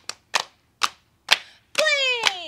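Four sharp hand slaps in an even beat, about two a second, keeping time for a group song; voices start singing together near the end.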